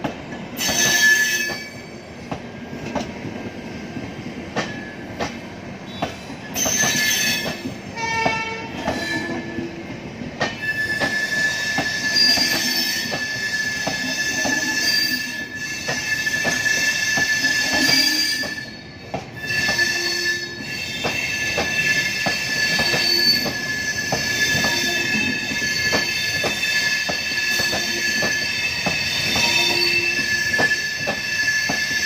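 Passenger coaches rolling slowly past, their wheels clicking over rail joints, as the train brakes to arrive at the station. A high, steady squeal from the wheels sets in about ten seconds in and holds to the end, with shorter squeals before it.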